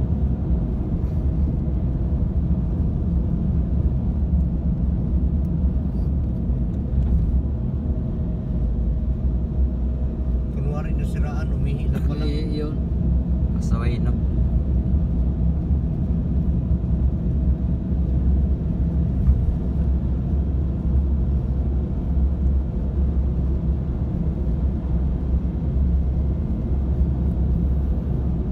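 Steady low rumble of a car cruising on a highway, heard from inside the cabin. A voice is briefly heard about eleven to fourteen seconds in.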